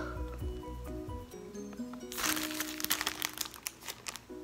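Plastic retail packaging of an inflatable globe crinkling for about a second, from about halfway in, as it is handled and turned over. Soft background music plays throughout.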